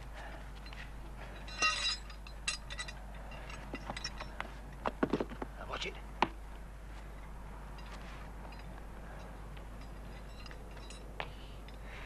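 Scattered knocks and clinks, a brief burst near two seconds in and the busiest cluster about five to six seconds in, over a steady low hum.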